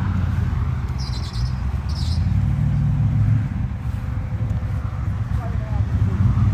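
Car engine idling with a steady low rumble.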